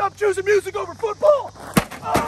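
A man yelling in short, wordless cries that rise and fall, then one sharp crash near the end as a flat-screen TV is smashed on gravel.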